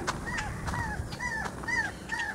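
An animal's short, high, arching calls, repeated several times a second.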